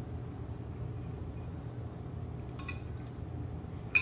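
Steady low room hum, with a faint clink about two and a half seconds in and a sharper clink of a metal spoon against a ceramic bowl just before the end.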